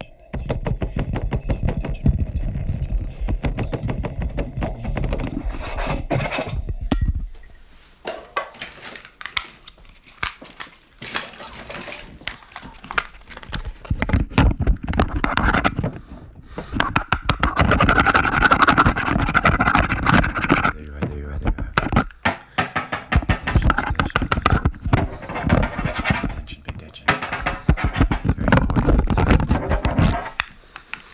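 Fast, aggressive ASMR trigger sounds right at a microphone: quick tapping, scratching and handling of objects, starting with a white mug. They come in dense runs of clicks broken by a few short pauses.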